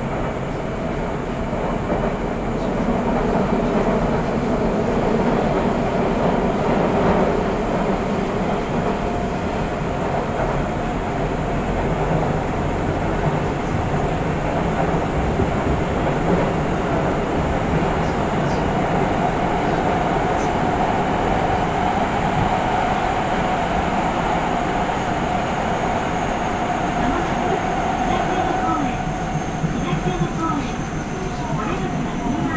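Nagoya Municipal Subway 5050-series train with GTO-VVVF inverter control running under way: a steady rumble of wheels on rail, with a steady whine from the traction equipment. A few gliding tones come in near the end.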